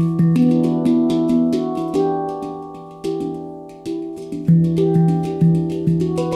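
Ayasa handpan in E Amara (E minor) tuning played with the fingers: a quick run of strikes on the tone fields, each note ringing on and overlapping the next. The strikes thin out and fade a little past halfway, then the low central note is struck again from about four and a half seconds in.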